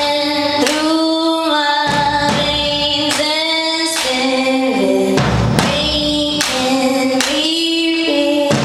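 Live concert performance: a woman singing long, held notes into a microphone over a slow, regular low drumbeat.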